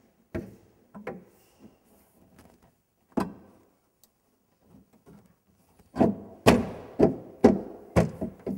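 A gloved hand knocking on a car's interior door trim panel to seat it, dull thunks. A few single knocks come first, then a quicker run of about two knocks a second near the end.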